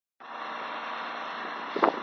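Steady outdoor background noise that comes in a moment after the start, with a short, louder sound near the end.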